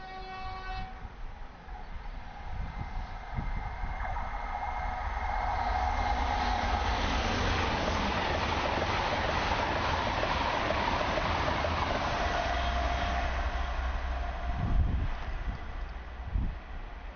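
An LNER Azuma high-speed train sounds a brief horn blast in the first second, then passes at speed. The rushing noise of the train builds, holds for several seconds and fades away near the end, with a short low thump as it clears.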